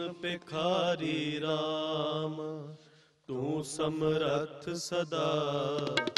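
A man singing a slow, drawn-out melodic line of Sikh kirtan, with long wavering held notes over a steady low drone. About three seconds in he stops briefly for a breath.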